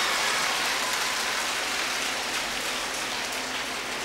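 Large audience applauding, a dense even patter that slowly dies away.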